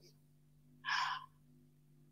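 A woman's single short breath in, about a second in, over a faint steady low hum.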